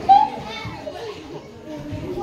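Young children's voices: a short loud call right at the start, then quieter talking.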